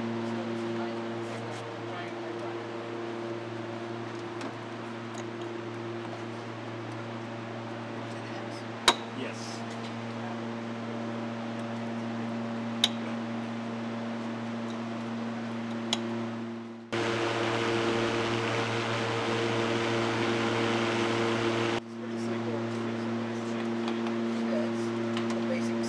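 Steady electrical hum with the rush of cooling fans from battery-electric generator equipment running under a load test, with three sharp clicks. For about five seconds near the end a louder rush of fan-like noise cuts in and stops abruptly.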